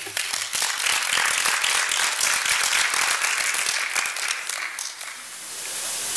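Audience applauding, a dense clatter of many hands clapping that thins out about five seconds in.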